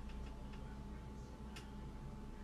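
A light click from a clear plastic false-eyelash box being handled, over a low steady room hum.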